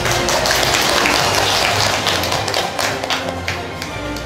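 Audience applause, a dense patter of many hands clapping, over background music; it dies down near the end and the music comes through again.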